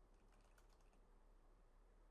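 Very faint computer keyboard typing, a few light key clicks, under near silence.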